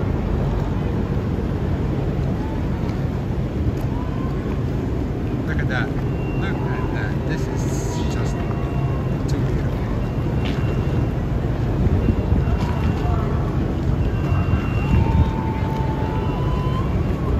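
Boat engine running with a steady low hum under wind and water noise, with the voices of a distant crowd faintly in the background.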